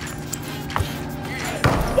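Quiet background music with two ball thuds on a hardwood basketball court, about a second apart.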